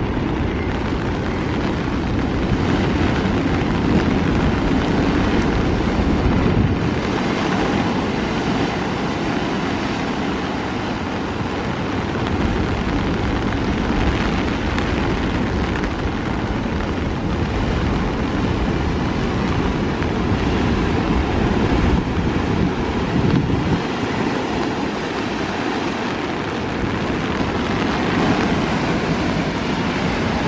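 Heavy surf from a rough sea breaking on rocks: a steady wash of breaking waves. Wind buffets the microphone in a low rumble that drops away twice for a few seconds.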